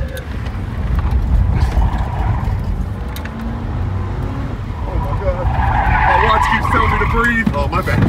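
A Ford Crown Victoria police car driven hard, heard from inside the cabin: the engine and road rumble run throughout. About five seconds in, a wavering tyre squeal builds and lasts a couple of seconds as the car corners hard.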